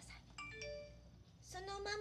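A short electronic chime rings once about half a second in, a clear bell-like tone that fades away within about half a second. A woman's voice starts near the end.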